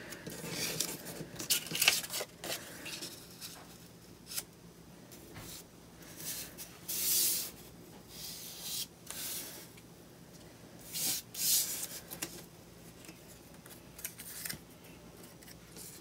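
Cut-out paper pieces rustling and sliding over a board as they are handled and laid in place, in short, irregular swishes.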